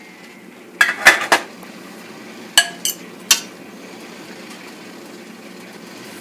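A fork clinking against a stainless steel pot about six times in the first few seconds, some strikes ringing briefly, as strudel is lifted out. Under it a steady low hiss from the potatoes sizzling in the bottom of the pot.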